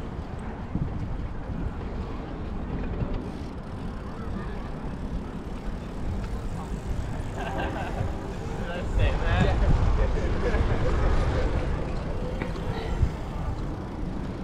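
Wind rumble on an action-camera microphone while riding a bicycle, growing louder about nine seconds in, with indistinct voices of people nearby talking from about seven seconds in.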